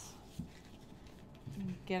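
A large sheet of paper being handled and slid across a desk: faint rustling with a soft knock about half a second in. A woman's voice starts right at the end.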